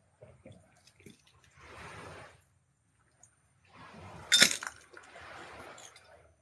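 Footsteps rustling through long grass and weeds, a few slow steps, with a sharp clink about four and a half seconds in, the loudest sound, as something hard is struck or stepped on.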